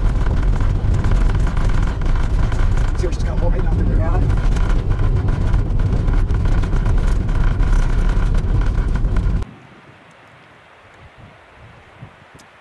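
Campervan driving on a gravel road, heard from inside the cab: a loud steady rumble of tyres and engine with a constant crackle of gravel. About nine and a half seconds in it cuts off abruptly to quiet open-air background.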